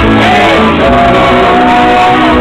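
Live pop-rock band playing loudly, with a voice holding one long note through the middle.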